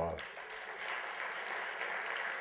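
An audience applauding steadily, just after a man's voice finishes a word at the very start.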